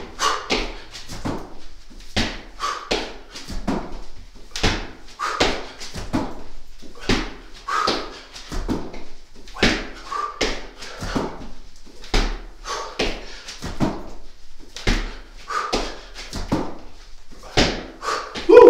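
A person doing burpees: repeated thuds of hands and feet landing on an exercise mat, one or two a second at an uneven pace, with hard breaths between them.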